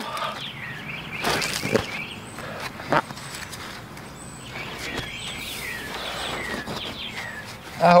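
Gloved hands scraping and smoothing a bed of dry concrete mix and setting a concrete landscape block down on it: a few short scrapes and knocks, the sharpest about three seconds in.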